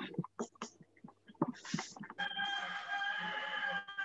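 A rooster crowing once, a long held call through the second half, after a few scattered clicks and knocks.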